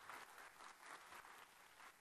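Very faint audience applause, near silence, as a speaker takes the stage.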